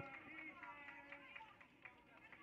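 Near silence with faint, distant voices calling and talking across the field.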